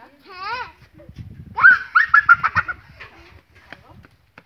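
A chicken cackling: a short wavering call, then a louder burst of rapid rising squawks about one and a half seconds in.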